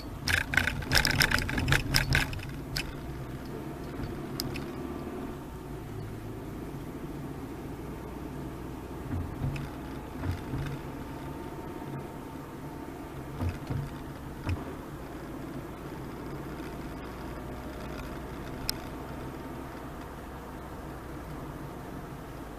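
Cabin noise of a Honda Freed Hybrid on the move: a quick run of sharp clatters and knocks in the first couple of seconds as the tyres cross the railway crossing rails, then steady tyre and road rumble with a few short low thumps from bumps in the road.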